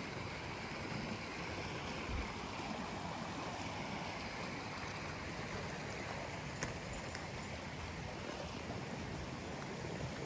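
A stream's water rushing steadily, with one short click a little past halfway.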